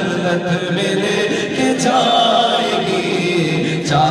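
A naat sung by a man into a microphone, with other male voices chanting along in a sustained, drawn-out melody.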